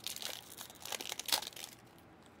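Foil trading-card pack wrapper crinkling as hands tear it open, in several short rustling bursts that stop shortly before the end.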